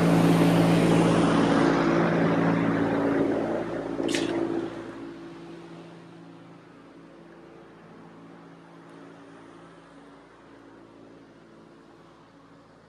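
A large fan running: a rush of air over a steady low hum, loud for the first four or five seconds and then fading to a faint hum. A single sharp click about four seconds in.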